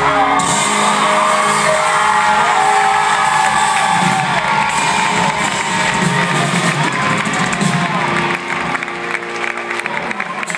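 Live concert music with the crowd cheering and whooping over it; the sound drops a little about eight seconds in.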